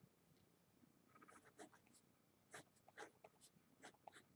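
Faint scratching strokes of a marker writing on paper, a short series of separate strokes that comes in a few clusters.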